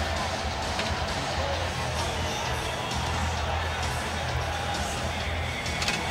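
Hockey arena ambience: steady crowd noise with music playing underneath.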